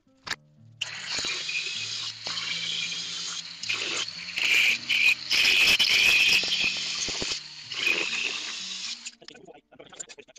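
Cordless angle grinder with a thin cut-off disc cutting into steel plate. The high whine starts about a second in, rises and dips as the disc bites, and stops near the end.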